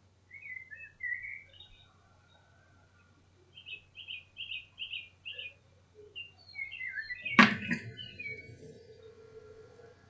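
A small bird chirping in short, quick notes, including a run of five evenly repeated chirps, with a single sharp knock about seven seconds in that is the loudest sound.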